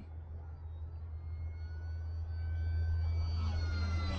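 Electric motor and propeller whine of a foam RC Spitfire in flight, growing louder as the plane flies in low, with the pitch dropping near the end as it passes. A low steady rumble runs underneath.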